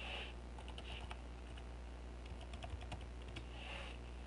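Faint typing on a computer keyboard: two short runs of irregular keystrokes while a login name and password are entered.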